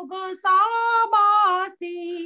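A woman singing a Gujarati Jain devotional bhajan solo and unaccompanied, in held notes with short breath breaks between phrases, heard over a video call.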